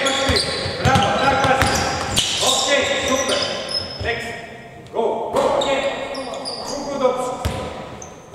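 A basketball bouncing on a hardwood court and sneakers squeaking during a live five-on-five drill, with shouted voices, echoing in a large hall.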